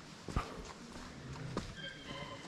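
Footsteps on a dirt and loose-stone forest trail: a few sparse, short knocks of shoes on ground and stones, the clearest about a third of a second in.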